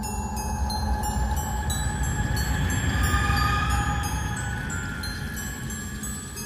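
Background music of light, glockenspiel-like chiming notes over a rushing, rumbling noise that swells about halfway through.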